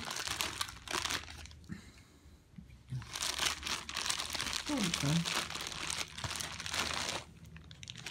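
Plastic courier mailer bag crinkling and tearing as it is cut and pulled open by hand, in irregular bursts with a pause of about a second around two seconds in.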